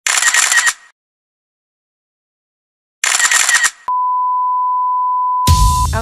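Intro sound effects: two short noisy bursts about three seconds apart with silence between, then a click and a steady single-pitch electronic beep lasting about two seconds. Music comes in just before the end.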